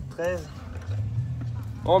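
A man's short vocal sound, then a spoken word near the end, over a steady low rumble.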